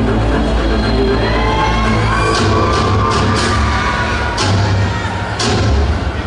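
Music for a pom-pom dance routine, with a held melody that rises in pitch in the first half, then sharp accented hits about once a second from a little over two seconds in.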